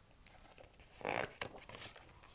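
A page of a hardcover picture book being turned: a short papery swish and rustle about a second in, with a lighter brush of paper just before the end.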